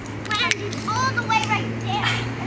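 Children's high-pitched voices calling out as they play, in short bursts of a few words, over a steady low hum.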